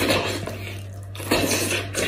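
Close-miked wet eating sounds: meat being bitten, pulled and sucked from a cooked animal head's bone, in two crackly bursts, one at the start and one about a second and a half in, over a steady low hum.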